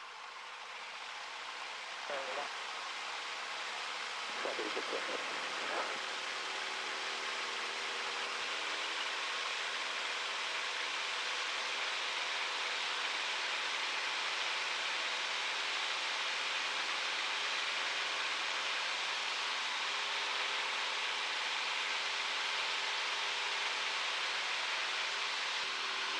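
Single-engine Jodel DR1050 light aircraft's piston engine at full take-off power, heard inside the cockpit as it runs along a grass strip and lifts into the climb. The steady engine noise grows louder over the first few seconds, then holds level.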